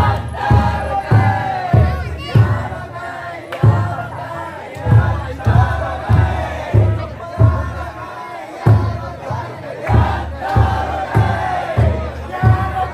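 The taikodai's big drum beating a steady, deep rhythm of about one and a half beats a second, while the crowd of bearers around the float chants and shouts along.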